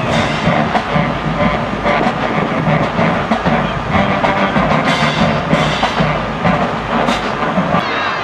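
College marching band playing in the stands, its drumline of bass drums and snares carrying a steady, driving beat under the horns.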